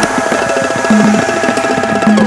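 Background salsa music in a percussion break: rapid drum hits with the bass line dropped out.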